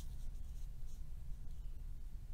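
Faint scratching and rubbing of a pencil and clear ruler on pattern paper, over a low steady hum.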